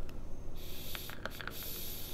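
A drag on a vape (mod with tank atomizer): a steady hiss of air drawn through the atomizer as it fires, beginning about half a second in, with a few small clicks or crackles along the way.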